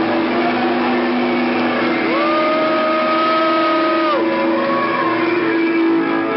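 Live rock band with electric guitars, keyboard and drums playing a loud, dense wash of sustained distorted chords. About two seconds in, one note slides up, holds for about two seconds and slides back down.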